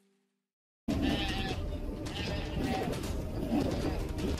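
Animal calls, repeated several times, over a steady low rumble, starting abruptly about a second in.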